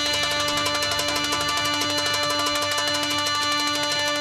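Live Arabic band playing a fanfare for a winner: one long held chord over a fast, continuous drum roll on frame drums and darbuka.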